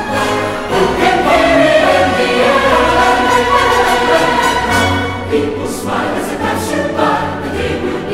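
Orchestral film score with a choir singing sustained lines; the music eases slightly in level about five seconds in.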